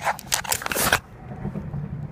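Rustling and scraping of a hand-held phone being moved about, its microphone rubbing against hands or clothing in a quick run of crackly bursts during the first second, over a steady low hum.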